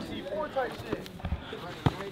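Indistinct voices of onlookers calling out during a grappling exchange, with one sharp thump near the end.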